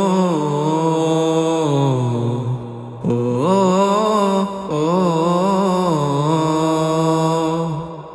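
Wordless, layered male vocal humming in long held notes with vibrato, a chant-like interlude between verses of a Bengali gojol. It drops off briefly about three seconds in, then swells back.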